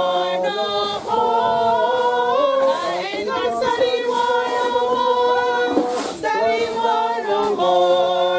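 A small group of women singing together unaccompanied, a cappella, with long held notes.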